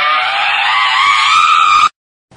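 A long, high-pitched human scream, held steady and rising slightly in pitch, cut off abruptly near the end.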